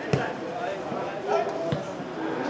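Two dull thuds of a ball being struck or bouncing, about a second and a half apart, over background voices.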